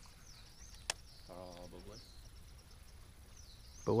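Faint birdsong: repeated high sweeping whistles. One sharp click about a second in, and a brief faint voice in the middle.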